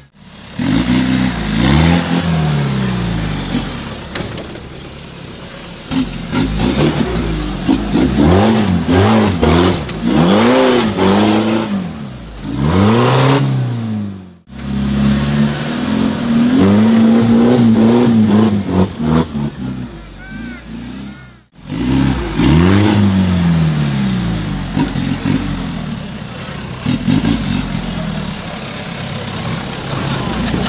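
Off-road trial buggy's engine revved hard in repeated bursts, each rising and falling in pitch, under load as the buggy claws through a dirt trench. The sound breaks off abruptly twice and resumes.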